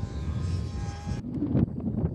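Wind rumbling on the microphone outdoors, with a faint steady whine through about the first second. The sound changes abruptly just over a second in, losing its upper range, while the low rumble carries on.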